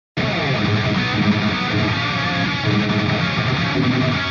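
Hard rock instrumental music led by electric guitar, starting abruptly right at the beginning.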